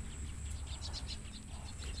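Faint outdoor ambience: a quick run of short, high chirps, like a small bird or insect, in the first half, over a low rumble from wind and the camera being handled.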